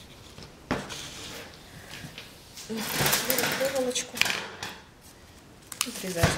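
Work-table handling noises as pliers are picked up and used: a sharp click just under a second in, then a dense run of clicks and rustling about three to four seconds in.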